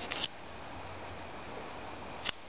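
Faint steady background hiss of room noise, with a short sharp hiss-like click about a quarter second in; no engine running.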